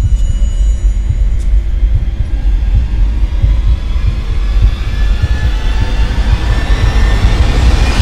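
Horror-film sound design: a loud, low rumbling drone with a hiss that grows brighter through the second half and swells sharply at the end.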